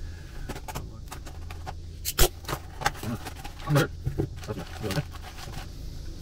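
A plastic mailing package being cut and torn open by hand, with crackling, rustling and irregular sharp clicks, and one loud snap about two seconds in.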